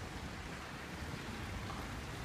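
Steady splashing of water from courtyard fountain jets falling into a pool, heard as an even rushing hiss.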